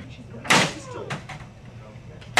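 A single hard slam about half a second in, as something is banged down on an office desk, followed by a couple of lighter knocks.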